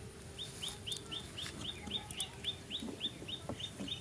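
A bird calling in a fast, even series of about fourteen short, high, falling notes, about four a second, starting about half a second in.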